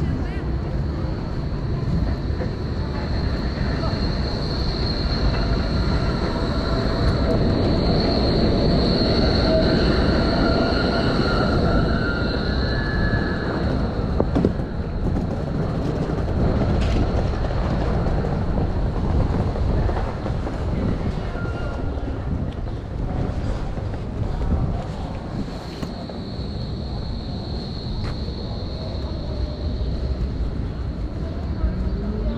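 A rail vehicle rumbling past, loudest about ten seconds in, with a high steady squeal from its wheels on the rails that fades and then comes back near the end.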